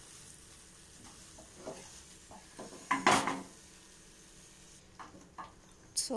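Spatula scraping and stirring thick coconut burfi mixture in a nonstick kadai: a few scattered strokes, with a louder scrape about halfway through and two short ones near the end.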